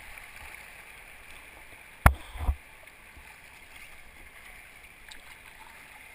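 Steady rush of river rapids around an inflatable kayak as it is paddled through. About two seconds in there is one sharp knock, followed by a second thump half a second later.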